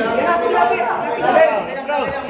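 Several ringside voices talking and calling out over one another in a large room.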